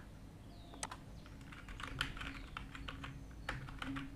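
Typing on a computer keyboard: a few scattered keystrokes about a second in, then a quick, irregular run of key clicks from about two seconds on as a number is entered.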